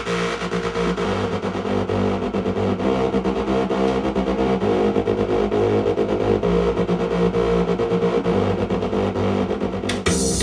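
Electronic dance-remix music: held synthesizer chords over a soft bass line, with notes changing every second or two and no drums.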